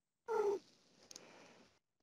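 A single short, high-pitched call, falling slightly in pitch, about a third of a second in, followed by a faint click.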